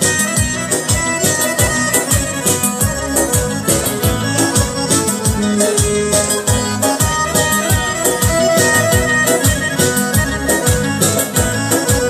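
Instrumental break of Uzbek folk-pop music: an electronic keyboard plays an organ- or accordion-like melody over a programmed drum beat of about two to three strokes a second, with a plucked long-necked lute joining in.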